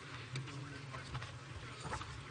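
Low steady hum and faint background chatter of a large assembly hall, with a few soft knocks.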